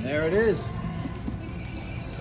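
A horse whinny: one short, wavering call in the first half second, over background music.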